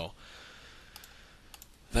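A computer mouse clicking a few times, lightly: a click or two about a second in and again a little later, over faint steady hiss.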